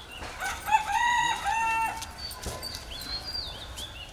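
A rooster crowing once, a single crow lasting about a second, starting a little under a second in.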